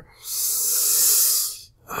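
A man's long breath, a hissing rush of air lasting about a second and a half.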